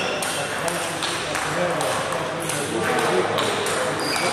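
Table tennis balls clicking on tables and bats, irregular knocks from rallies around the hall, over a murmur of voices.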